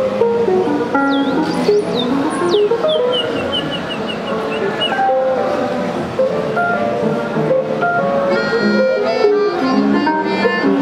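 Live electronic-acoustic music from a small ensemble of theremin, piano, Tenori-on and melodion with effects: busy short notes over a low bed, with high swooping glides early on and a quick falling run of high notes, thickening into dense chords near the end.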